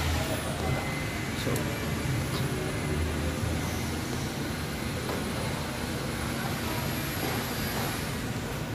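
Steady low rumble of idling vehicle engines, with a faint steady high whine and a few light clicks.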